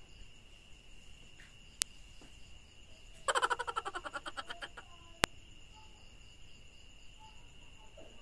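A small animal's rapid chirping call about three seconds in: a quick run of chirps lasting about a second and a half, fading out. It sits over a faint steady high whine, and there are two sharp clicks, one before the call and one after.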